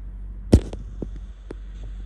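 Low steady hum with one sharp click about half a second in, then a few lighter clicks.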